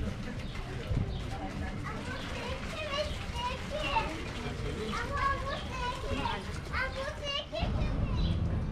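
Indistinct voices of passers-by, including children chattering, with no clear words, over a steady low rumble.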